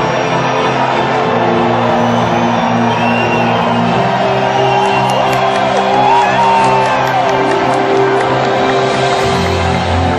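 Loud live pop music over a concert sound system, sustained chords that change a couple of times, with an arena crowd cheering and whooping over it.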